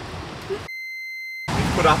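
A single steady high-pitched beep lasting under a second, laid over the sound track with all other sound cut out while it plays: a censor bleep over a spoken word.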